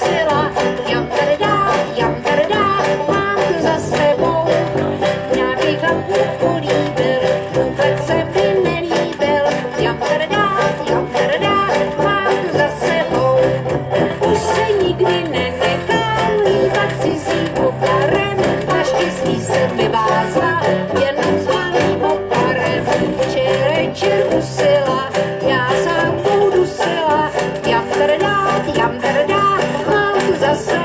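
Live banjo band playing a song: a singer's voice over strummed banjos, with a sousaphone playing the bass line.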